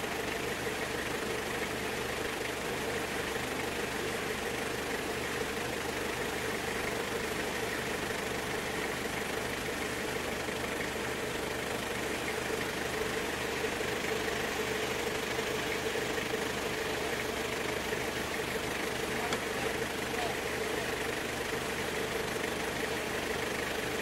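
A steady mechanical hum with a constant tone and hiss, like a motor running evenly, unchanged throughout.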